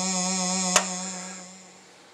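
Moog Werkstatt analog synthesizer sounding one steady held note rich in overtones, played from a MIDI keyboard through an Arduino interface. There is a sharp click about three quarters of a second in, and the note then fades out over the next second.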